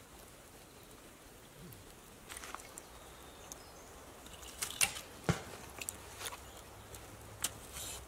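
Split firewood pieces being stacked on a campfire: scattered light wooden knocks and clatters, the loudest two a little past halfway.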